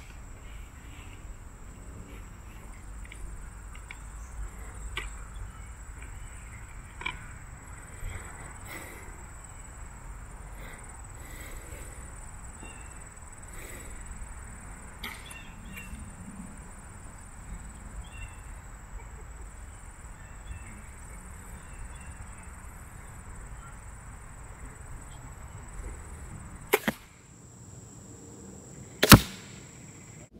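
Bear X Intense crossbow being shot: a low background of light handling clicks under a steady high thin whine, then near the end two sharp snaps about two seconds apart, the louder last, of the crossbow firing and its bolt striking the foam target.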